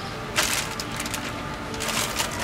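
Handling noise of plastic epoxy bottles and their dispensing pump: a run of small clicks and rustles starting about half a second in, then quieter rustling.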